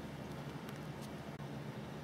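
Steady hum and hiss of cooling fans in powered rack-mounted network and server equipment.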